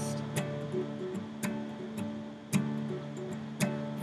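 Nylon-string classical guitar strummed in an instrumental break, a chord strum about once a second with the chords ringing on between strokes.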